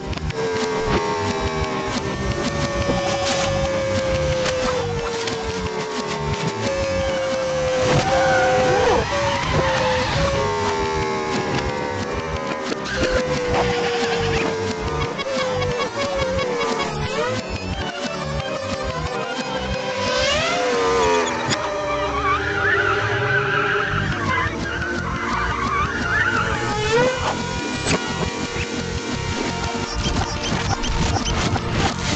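Cartoon soundtrack with a motor-like sound effect whose pitch slides down again and again, every second or two, over music, with squealing glides near the end.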